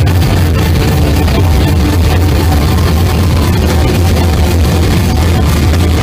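Loud live rock band playing a dense, distorted wall of sound over a steady low drone.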